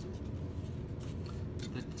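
Steady low room hum with a few faint, light clicks from small tools being handled, and one spoken word near the end.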